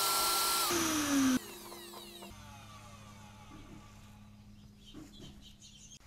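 Vacuum cleaner running with a steady whine, its nozzle covered by a thin filter sheet drawing up cornstarch. It is switched off under a second in, and the motor's whine falls in pitch as it spins down over about a second, leaving only a faint hum.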